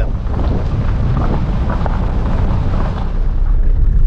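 Car cabin noise while driving: a loud, steady low rumble of the engine and tyres on the road, with a hiss of wind over it.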